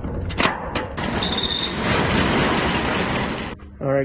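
Latch on a metal roll-up storage unit door clicking a few times. The door then rolls up with a long, loud rattling rush, a brief high squeal as it starts moving, and it stops shortly before the end.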